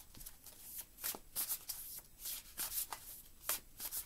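A deck of tarot cards being shuffled by hand: a run of short card sounds at irregular spacing, two or three a second.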